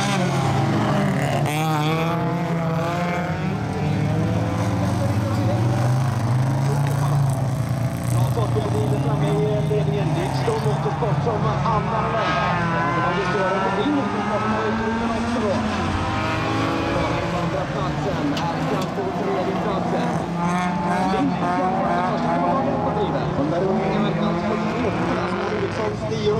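Several folkrace cars racing together, their engines revving up and down as they accelerate and lift through the heat.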